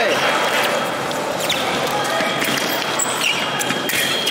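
Fencers' feet thudding and stamping on the piste as they move through a foil bout, with several short knocks, over the chatter of a busy sports hall.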